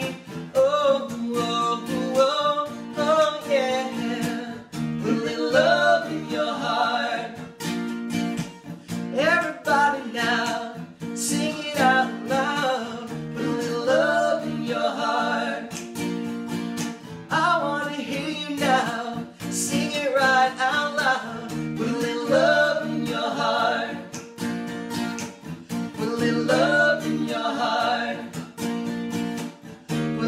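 Acoustic guitar strummed in steady chords under a man's singing voice.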